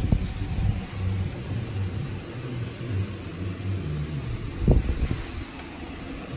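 A low, steady rumble with a wavering hum underneath, and two dull thumps: one at the start and one about five seconds in.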